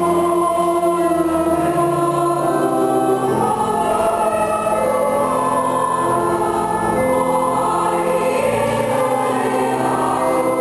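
Church choir singing in several voices, holding long notes that move to new chords every second or two.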